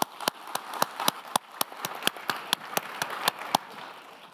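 Audience applauding a finished speech, with single sharp claps standing out, dying away about three and a half seconds in.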